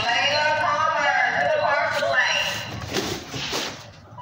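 People's voices talking, followed about three seconds in by a short burst of clattering noise.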